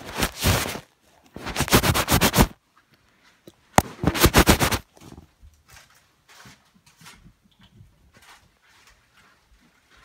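Handling noise from a phone camera being wiped clean: three loud bursts of rubbing right against the microphone in the first five seconds, then only faint scattered rustles and taps.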